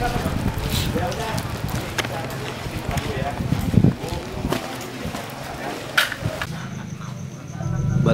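Indistinct voices of people nearby, with scattered clicks and handling knocks; there is a heavy thump a little before the middle and a sharp click about three quarters of the way through.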